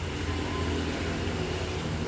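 Small motorcycle engine idling steadily, a low even hum in the workshop.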